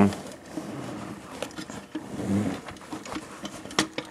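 Hands handling foam and cardboard, with light rustling and a few small knocks as foam rolls are pushed into place around a metal case in a cardboard box.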